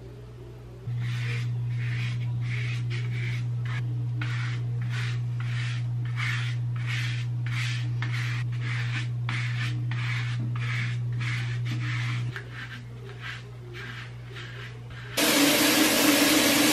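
Natural-bristle dry body brush scrubbing over skin in repeated strokes, about two a second, over a steady low hum. About fifteen seconds in, a loud rush of shower water starts.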